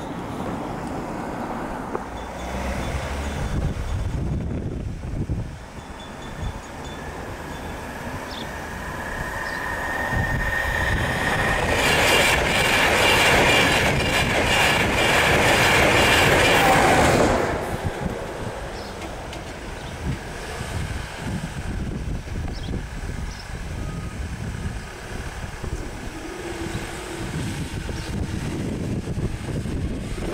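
LNER express passenger train passing over the crossing at speed. The rumble of wheels on rail builds over several seconds, stays loudest for about five seconds with a high ringing in it, then drops off suddenly as the last coach clears.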